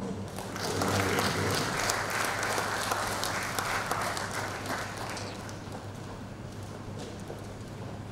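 Audience applauding, swelling about half a second in and dying away after about five seconds.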